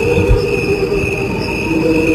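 Recording of crickets chirping in a steady high trill, layered over a slowed-down version of the same cricket song that sounds like a choir holding low sustained notes.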